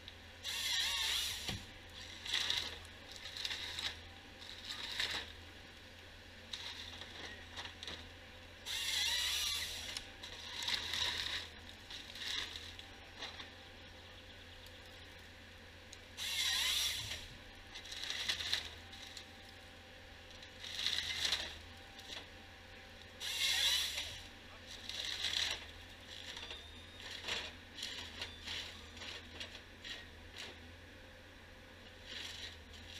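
Timberjack 1470D harvester head feeding and delimbing a spruce stem: repeated bursts of branches cracking and scraping every second or two, with a few louder, longer bursts, over the steady low hum of the machine's diesel engine.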